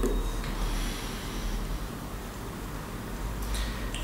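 A quiet room with a steady low hum and faint breathing through the nose.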